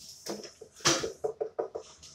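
Handling noise at a desk: a run of short rustles and knocks as a book is moved and a person reaches across the table, with one louder knock about a second in.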